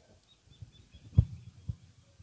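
A few dull, low thumps over faint background noise. The loudest comes about a second in and a smaller one follows half a second later.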